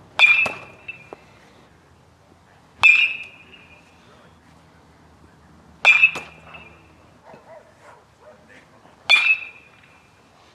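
Metal baseball bat hitting pitched balls in batting practice: four sharp pings with a short ring, about three seconds apart.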